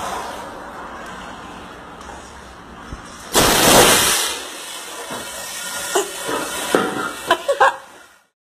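A tyre bursts on a wheel in a tyre workshop: a sudden, very loud bang with a short rush of noise about three and a half seconds in. Several sharp knocks and bangs follow near the end.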